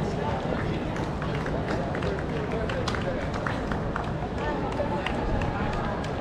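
A marathon runner's footsteps on cobblestones in a steady running rhythm, with spectators' voices along the course and a low wind rumble on the microphone.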